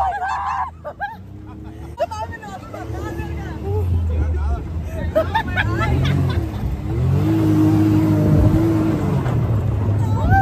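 Engine of an open off-road side-by-side (UTV) running under way with wind rumbling on the microphone, getting louder and pulling harder through the second half. Women's laughing and shrieking voices come over it.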